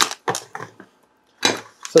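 Anti-static plastic bag crinkling as a circuit board sealed inside it is handled, in two short bursts of crackles and clicks with a brief pause between.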